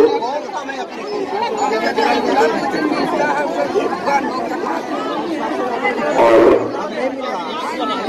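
Several people talking at once, overlapping chatter from a small crowd gathered close around the microphone. One voice rises louder about six seconds in.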